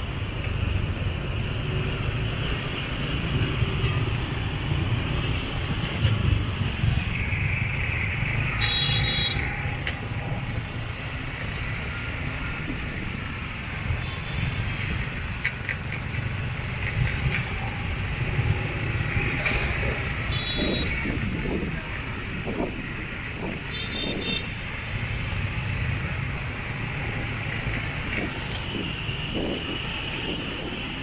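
Motor scooter traffic at low speed: many small scooter engines and tyres give a steady low rumble. A few short high-pitched beeps cut through, about a third of the way in and twice more past the middle.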